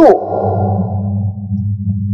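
A steady low drone of a few held tones, with a fainter, higher hum fading away over the first second and a half or so.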